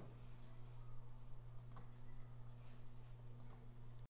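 Quiet room tone with a low steady hum, broken by a few faint clicks in two close pairs, one pair a little past a second and a half in and one near the end.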